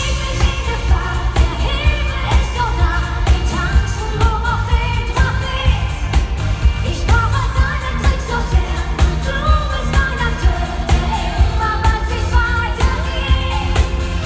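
A live pop band in concert: a female lead singer sings into a hand microphone over keyboards, electric guitars and bass, with a heavy bass and a steady beat.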